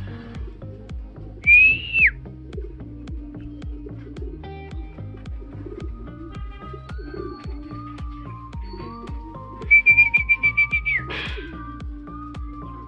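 Background music with a steady beat, over which a person whistles loudly twice: a rising whistle that drops away sharply about a second and a half in, and a fast warbling whistle of about ten pulses near the end. This is the kind of whistle a pigeon fancier uses to call racing pigeons down off the roof into the loft.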